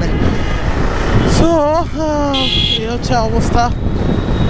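Steady wind and road rush from a Suzuki Gixxer SF motorcycle riding through city traffic, with the engine note under it. A brief high-pitched sound cuts in for about half a second a little past the middle.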